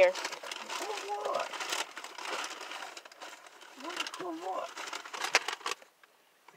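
Paper fast-food bag rustling and crinkling as it is handled, a run of irregular crackles and crisp clicks.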